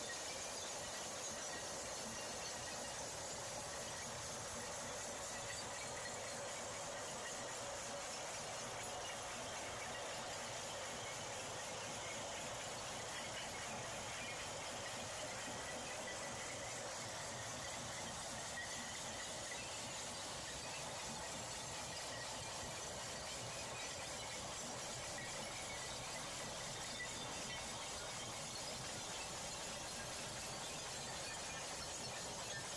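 A jaw crusher module running with a steady, unchanging mechanical noise that carries a faint high whine. No distinct crushing impacts or glass breaking can be picked out.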